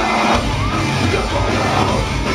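Deathcore band playing live at full volume: distorted down-tuned guitars, bass and drums, with harsh shouted vocals over them.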